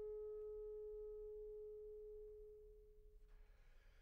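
Clarinet holding one very soft, almost pure-sounding note, which fades away about three seconds in, leaving near silence.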